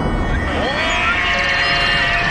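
Podcast intro sound design: electronic tones over a loud rushing noise bed, one tone curving upward about half a second in and then holding steady alongside a high held tone.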